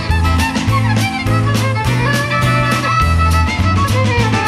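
Fiddle playing a folk tune with keyboard and a drum kit accompanying, the drums keeping a steady beat under held bass notes.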